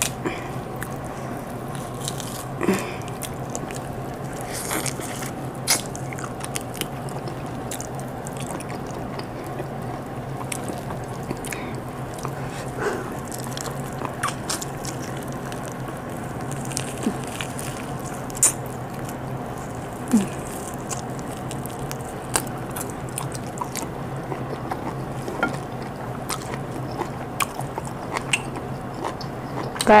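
Close-up eating sounds of a person biting and chewing stewed chicken off the bone by hand: scattered short wet clicks and mouth smacks, over a steady low hum.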